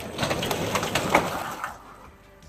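Overhead sectional garage door rolling open: a rattling rush that lasts about a second and a half, then fades out.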